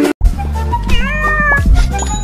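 A short gap at a cut, then background music with a heavy bass and a cat meow about a second in.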